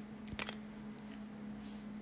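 A few faint clicks of small objects being handled in the first half-second, over a faint steady low hum.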